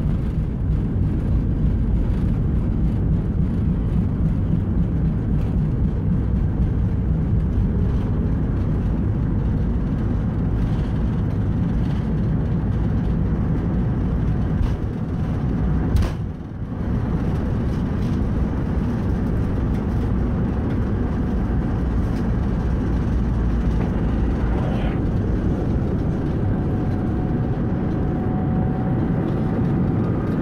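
Boeing 747-400 on its takeoff roll heard from the cabin right under the nose: a loud steady rumble with the nose wheels bumping over the runway. A faint steady whine joins in near the end.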